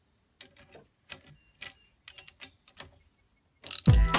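Socket ratchet clicking as it turns the nut on the end of a lathe lead screw, about nine separate ticks. Music cuts in loudly near the end.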